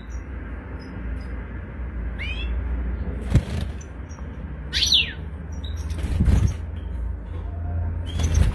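European goldfinch giving a few high, downward-sliding calls, the loudest about five seconds in. A couple of knocks fall around the middle, over a steady low hum.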